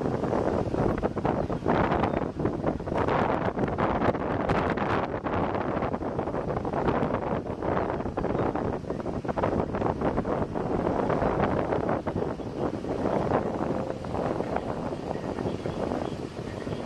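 Gusty wind rushing and buffeting against the microphone of a vehicle, a dense steady noise with frequent irregular gust peaks.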